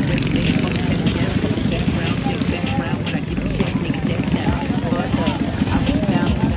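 Small mini bike engines idling steadily close by, a dense low chugging throughout, with people talking faintly over them.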